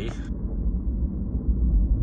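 Steady low rumble of a vehicle driving along a road, heard from inside the cab: engine and tyre noise while under way.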